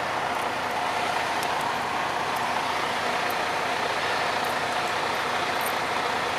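Steady drone of a nearby vehicle engine idling, with a faint constant hum and a few small faint clicks.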